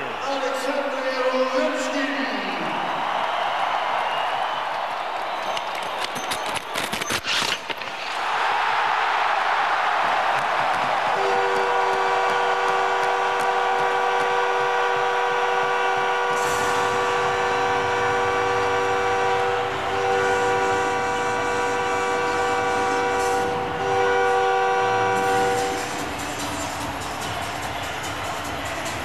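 Arena crowd cheering loudly for a game-winning shootout goal; about eleven seconds in a goal horn starts blaring over the cheering, a steady multi-note blast that runs for about fourteen seconds with two short breaks.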